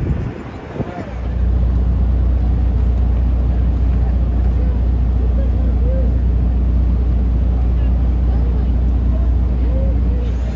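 A steady low rumble starts about a second in and holds at an even level, with faint distant voices over it.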